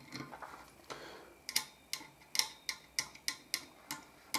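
Multimeter probe tips clicking against metal pins and pads on an amplifier circuit board: a run of about ten sharp ticks in the second half, with no continuity beep, as there is no short from the supply to ground or the heatsink.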